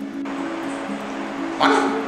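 Background film score holding sustained low notes. Near the end a sudden, short, loud sound breaks in over it.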